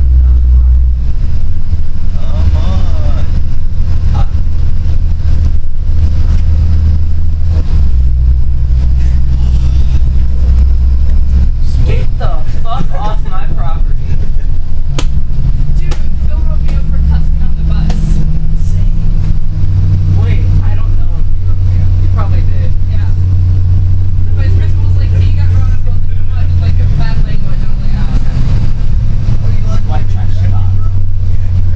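Bus engine droning, heard from inside the passenger cabin while the bus is under way; its low pitch steps up and down several times. Faint passenger chatter runs underneath.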